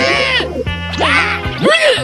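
A cartoon character's strained, wordless vocal noises of disgust at sour lemon juice: three quick pitch swoops that rise and fall. Background music runs underneath.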